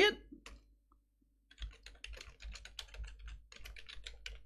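Typing on a computer keyboard: a quick, irregular run of key clicks that starts about a second and a half in.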